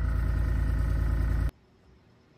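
Small airbrush air compressor running with a steady motor hum, stopping abruptly about a second and a half in.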